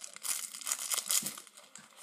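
Clear plastic straw wrapper crinkling as it is handled, a string of small irregular rustles and crackles.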